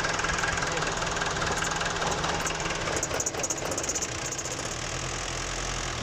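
Nissan CD17 four-cylinder diesel engine idling steadily, which the mechanic judges to sound fine, with its injection pump in good order.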